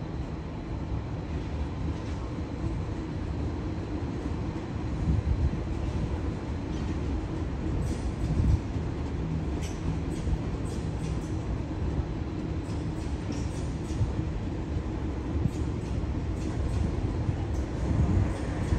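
Double-deck electric passenger train passing slowly on the tracks: a steady low rumble and motor hum, with scattered brief high clicks and squeaks from the wheels.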